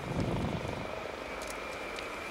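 Boeing B-52H bomber's eight turbofan jet engines on final approach, a steady distant jet roar with a high whine over it, and a short low rumble near the start.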